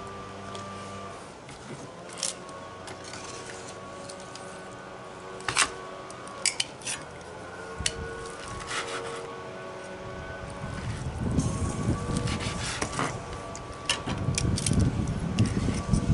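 Metal tongs and a chef's knife working a rack of smoked pork ribs on a cutting board: a few sharp clicks and knocks as the tongs grip and the blade cuts down through the bones to the board. A low rumble comes in over the second half.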